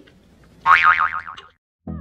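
A cartoon-style 'boing' sound effect, its pitch wobbling rapidly up and down for about a second. After a brief silence, soft end music with a low beat starts near the end.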